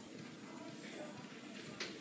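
Quiet salon room tone with a single sharp snip of hair-cutting scissors near the end.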